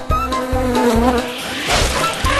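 A cartoon insect-buzz sound effect, a wavering drone through the first second, over upbeat background music with a steady beat. A hissing swell rises near the end.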